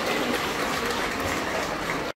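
Audience applauding, with crowd chatter: a steady, even clatter of many hands.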